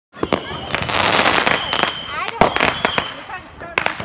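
Fireworks going off: a dense run of sharp cracks and crackling through the first two seconds, then a few separate loud bangs, the last pair near the end.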